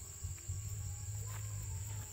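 Insects, crickets by the sound of it, trilling steadily at one high pitch, with an uneven low rumble underneath.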